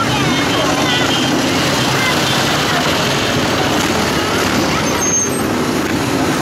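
A procession of motorcycles riding slowly past, many engines running together in a steady, loud mix, with spectators' voices mixed in.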